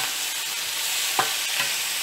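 Sliced onion, tomato and yellow pepper sizzling steadily in oil in a frying pan as a spatula stirs them, with a single sharp click a little past halfway.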